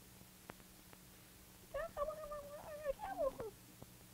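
A puppet character's wordless whining cry, voiced by the puppeteer. It starts a little before halfway as one held note, then breaks upward and falls away in a descending wail.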